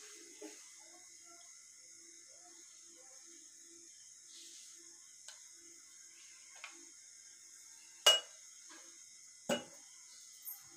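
Steel kitchenware clinking as a steel oil container is handled and set down. A few faint taps come first, then two sharp metallic clinks about eight and nine and a half seconds in, the first the louder, over a faint steady high hiss.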